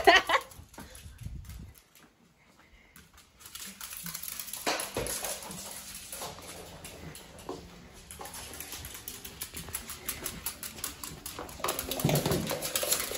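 A small dog's claws ticking lightly and quickly on a wood floor as she moves around with her toy, starting about three and a half seconds in after a brief hush. A person laughs at the very start.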